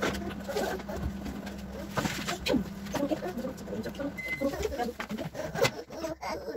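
Scattered small children's voices and short household knocks and clicks, over a steady low hum that stops about two and a half seconds in.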